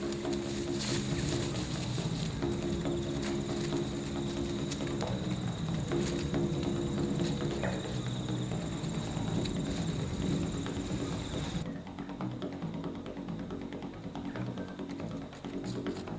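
Background music with held low notes that change every few seconds. A faint, steady high tone stops suddenly about three-quarters of the way through.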